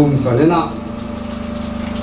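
A man's voice speaking into a microphone for about the first half-second. Under it, and on through the pause that follows, runs a steady low hum with a fast, even pulsing, like a motor running.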